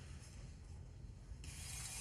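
Quiet handling of the altar vessels as the priest sets down the paten and takes up the chalice. Near the end there is a brief rustling hiss, about half a second long, of his vestment brushing against his clip-on microphone.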